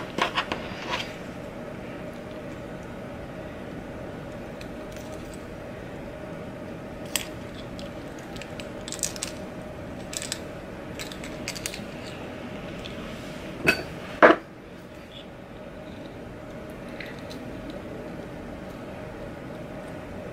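Small metal keychain hardware clinking and clicking as it is worked by hand. Light clicks come scattered throughout, with two louder ones close together about two-thirds of the way in, over a steady low room hum.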